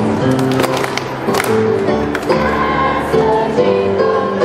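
Middle-school chorus of young voices singing a holiday song with a backing accompaniment, notes held and stepping from pitch to pitch. Short sharp ticks sound irregularly through it.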